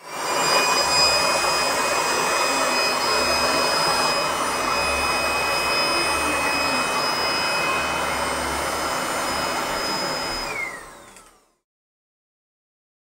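Electric hair dryer blowing air in a steady whir with a thin high whine. Near the end it is switched off: the whine falls in pitch and the whir dies away.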